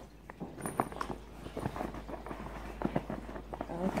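Hands handling a military gas mask carrying bag, working its flap and strap: a string of irregular light knocks, taps and rustles, over a low steady hum.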